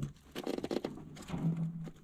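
Fingers handling an old car wiring harness: faint, irregular crackling and rustling of brittle insulation and tape as the wires are pulled apart, with a short low hum in the second half.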